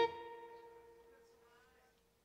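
The closing note of a blues song: an electric guitar note struck sharply and left to ring out, fading away over about two seconds.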